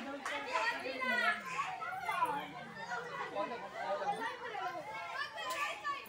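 Children at play shouting and calling out, many high voices overlapping in a busy chatter.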